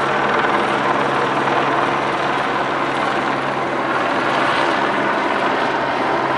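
Helicopter running steadily, a continuous drone with no sudden events.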